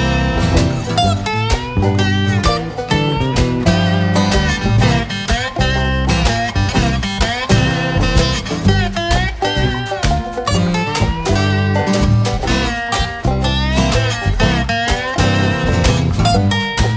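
Instrumental break in a country-blues song: guitar playing a lead line of bending, sliding notes over a stepping bass line.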